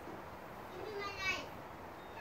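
A child's voice calling out once, briefly and high-pitched, about a second in, rising in pitch.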